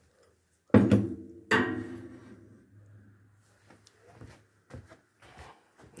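Two loud metallic clanks about three quarters of a second apart, each ringing on briefly, as a steel bar is set down on a bicycle trailer's metal bed, followed by several lighter knocks and taps.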